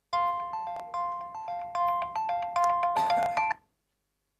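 Mobile phone ringtone: a short melody of bright, chime-like notes that cuts off suddenly about three and a half seconds in.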